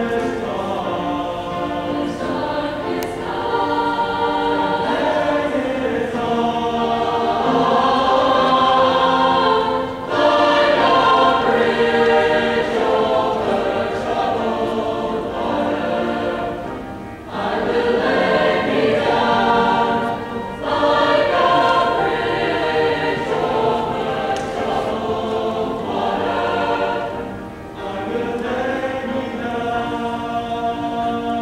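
A mixed high-school choir singing in harmony, sustained phrases with brief breaks between them.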